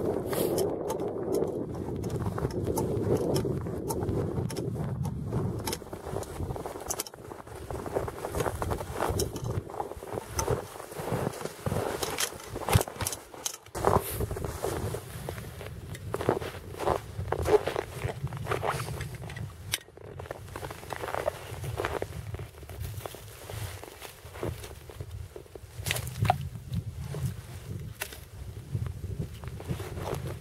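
Footsteps crunching through snow, then a run of sharp knocks and crunches as a frozen-over ice-fishing hole is broken open, with wind on the microphone.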